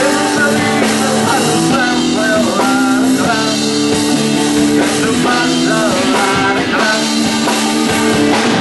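Live rock band playing loudly: electric guitars over a drum kit, with a bending melodic line on top.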